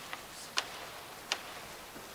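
Three short, sharp clicks at uneven intervals over a quiet, steady room hiss.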